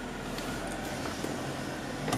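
Steady whirring of the Mercedes-Benz CLK convertible's electro-hydraulic soft-top pump, running as the roof finishes closing.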